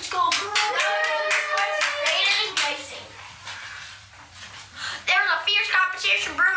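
A child's voice over a quick run of sharp taps in the first two or three seconds, then a quieter stretch before voices return near the end.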